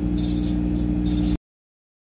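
50 W CO2 laser engraver running a job, with its water pump, air-assist compressor and exhaust fan going. It makes a steady hum with higher-pitched hiss over it. The sound cuts off abruptly to dead silence about one and a half seconds in.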